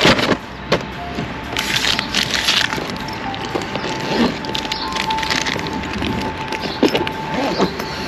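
Paper takeaway bag crinkling and rustling as rubbish is pushed into it, with scattered sharp clicks and knocks. A faint steady high tone runs underneath.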